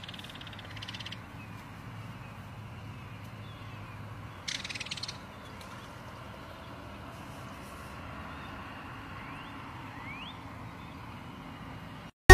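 Belted kingfisher giving its dry, rattling call: a short rattle at the start and a louder one about four and a half seconds in.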